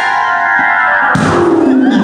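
Organ playing held chords; about a second in, a fuller, lower chord comes in.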